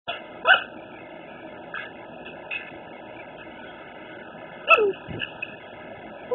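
A dog barking: a sharp bark about half a second in and a louder one near the end that drops in pitch, with a few fainter sounds between.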